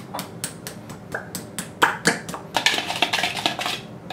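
Metal spoon clicking and scraping against a mixing bowl while sauce is mixed: scattered taps at first, then quick, steady stirring strokes through the second half.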